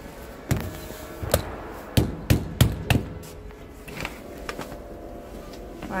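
Irregular knocks and bumps, about eight in all and bunched about two to three seconds in, over a steady hum inside a stainless-steel lift car.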